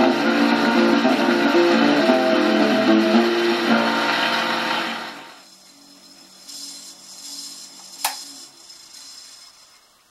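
A 1928 Victor 78 rpm shellac record playing a guitar-led string tune, which ends about five seconds in. Then only faint surface hiss from the stylus in the record's run-out is left, with one sharp click a few seconds later.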